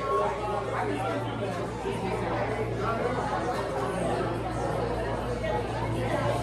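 Background chatter of many people talking in a restaurant dining room, with a steady low hum underneath.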